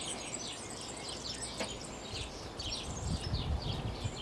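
Small birds chirping over and over, many quick high chirps that fall in pitch, with a soft low rumble in the last second.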